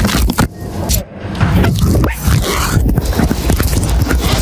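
Jet beads and sequins scraping and rustling as they are handled on embroidered lace, in irregular bursts with brief drops, over a deep low rumble.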